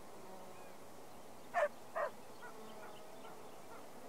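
Two short animal calls, half a second apart about a second and a half in, each falling in pitch, over a steady faint background ambience, with a few faint chirps after them.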